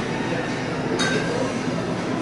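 Metal wire shopping cart rolling and rattling across a store floor in a steady racket, with a sharp clink about a second in.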